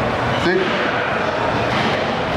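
A steady, even rushing background noise, with a man briefly saying "See?" about half a second in.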